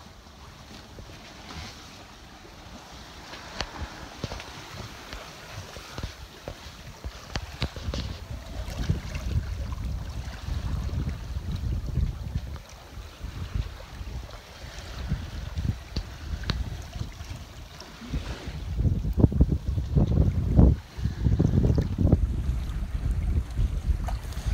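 Wind buffeting the microphone on the deck of a sailing yacht under sail, with the sea rushing along the hull. The gusts build, and the loudest come about three quarters of the way through.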